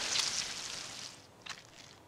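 Cartoon sound effect of blood spraying from a stab wound, a wet hiss that fades away over about a second and a half, with a short click near the end.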